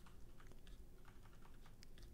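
A handful of faint computer keyboard keystrokes, scattered taps a few tenths of a second apart.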